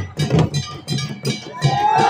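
Rhythmic percussion beating about four strokes a second over crowd noise. Near the end a loud, high, wavering cry from the crowd sets in.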